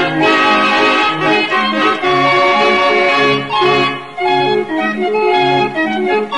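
Chilean organillo, a hand-cranked barrel organ, playing a tune with a bass-and-chord accompaniment repeating under the melody. It dips briefly about four seconds in.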